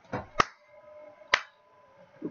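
Computer mouse clicks while selecting edges. There are two sharp clicks about a second apart, the first with a softer sound just before it.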